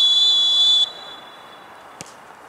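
Referee's whistle: one long, steady blast, shrill and breathy, that cuts off sharply just under a second in.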